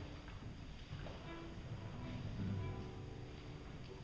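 Chamber ensemble beginning a piece very softly: a few faint held notes over the hall's low room noise.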